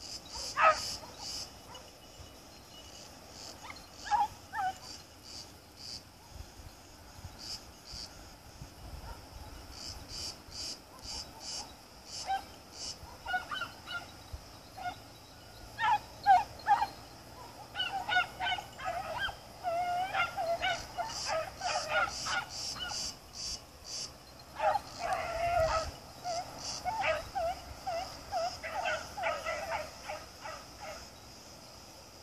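Hunting beagles giving tongue: short, high yelping calls, a few scattered ones at first, then rapid runs of yelps through the second half. A steady high insect buzz runs underneath.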